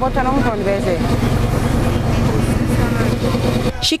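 Busy market ambience: voices of people talking and calling in the crowd over a steady hum of vehicle traffic. It cuts off sharply near the end.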